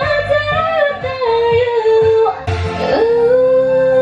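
A woman singing into a handheld microphone over a karaoke backing track, holding long sustained notes that bend in pitch.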